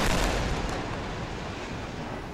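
The rumble of an airstrike explosion on a high-rise building, loudest at the start and fading slowly.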